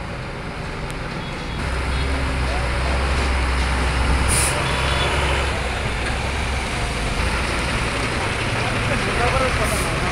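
Heavy loaded cargo truck's diesel engine rumbling as it drives slowly past close by, getting louder a second or two in. There is a short hiss about four seconds in and another near the end.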